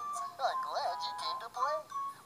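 A character voice singing a song over backing music, heard thin and lacking bass as if through a television speaker.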